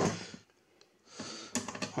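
A few light metallic clicks in the second half as a loosely bolted transformer is rocked by hand in the sheet-metal chassis of an electrosurgical unit; its mounting bolts are loose.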